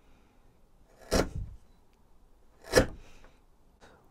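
Two short strokes of a hand chisel paring the saw fuzz off a softwood tenon's shoulder, one about a second in and another near the three-second mark.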